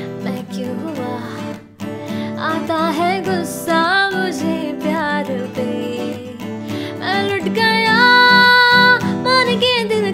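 A Yamaha acoustic guitar strummed in a steady rhythm, with a woman singing over it. Her voice comes in about two seconds in, and she holds one long note near the end.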